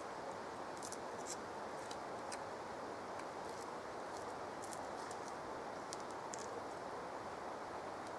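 Faint, crisp little crunches of a raw sweet cicely stem being chewed, scattered over a steady outdoor hiss.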